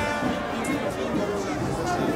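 Marching band music, fairly steady and not loud, under the chatter of a crowd.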